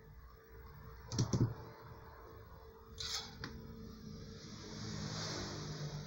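Small metal clicks of pliers working a resistor's wire leads: two sharp clicks about a second in, and a few lighter ones about three seconds in. A soft high hiss builds near the end.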